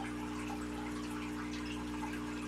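A steady low hum made of several fixed tones over a faint hiss, unchanging throughout.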